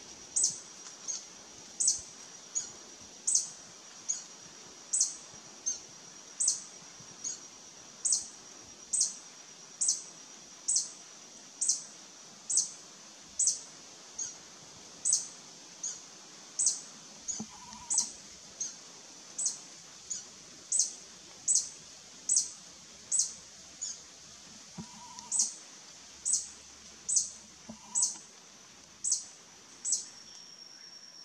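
Male violet sabrewing, a large hummingbird, giving a long, steady series of sharp, high chip notes, a little more than one a second, some louder and some softer. Under the notes runs a steady high-pitched tone.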